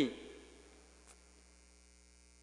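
A man's last word fades out in room reverberation, then a low, steady electrical mains hum remains through the pause, with one faint click about a second in.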